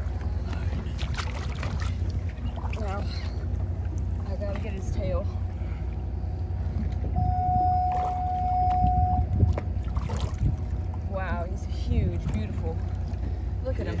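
Steady low rumble of wind and water around a small boat at sea, with faint voices now and then. A single steady high tone sounds for about two seconds near the middle.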